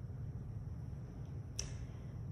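Quiet room tone with a steady low hum, broken by one short, sharp click about one and a half seconds in.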